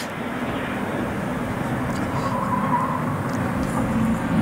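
Steady outdoor background noise: an even hiss with a low hum underneath.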